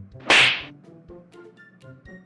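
A single sharp swish sound effect about a quarter second in, marking a cartoon hand swing, followed by faint background music.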